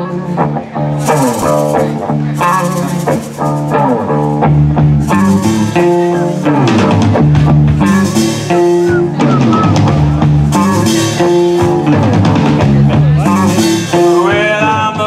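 Live band playing amplified guitar, bass guitar and drum kit, with cymbal crashes coming round every second or so. The sound builds over the first second or two as the band comes in.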